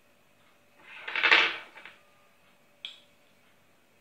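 Small glass containers handled on a tabletop: a short, loud scraping rustle about a second in, then a single sharp click near three seconds in as a small jar is picked up.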